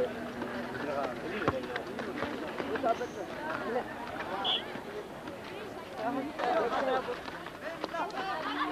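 Crowd of basketball spectators chattering and calling out, many voices overlapping, with a few scattered sharp ticks.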